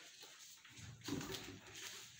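A small hand garden tool scraping and digging in the soil and dry leaves of a flower bed, a few irregular scrapes, the clearest about a second in.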